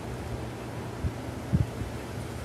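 Quiet outdoor background noise with light wind on the microphone, and two soft low thumps about a second and a second and a half in.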